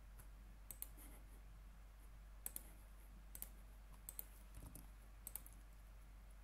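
Computer mouse button clicking quietly, about five quick double clicks spread out, over a faint low hum.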